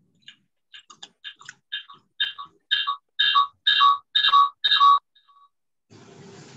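An electronic ringtone: a short falling two-note chime repeated about twice a second, starting faint and getting steadily louder, then cutting off suddenly about five seconds in.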